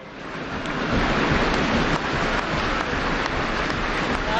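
Large audience applauding, swelling over the first second and then holding steady.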